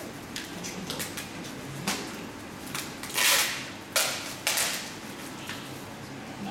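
Handling noise of shadow puppets and their rods behind the screen: scattered light clicks and knocks, a loud rustle about three seconds in, then two sharp knocks a half-second apart.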